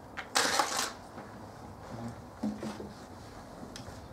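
Felt-tip marker drawing a line on a whiteboard: one short scratchy stroke about half a second in, then quiet room noise.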